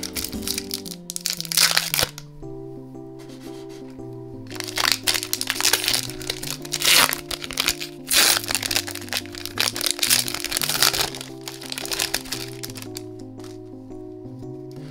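Foil wrapper of a Disney Lorcana booster pack crinkling and tearing as it is opened by hand, in spells of crackling with a lull about two seconds in, over steady background music.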